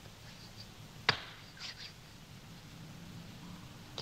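A limpet mine handled as it is passed from hand to hand: a single sharp click about a second in, then a few faint handling sounds over a low hum.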